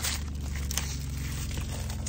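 Clear plastic packaging crinkling and rustling as a fabric travel bag is handled to be unwrapped, with irregular crackles over a low steady hum.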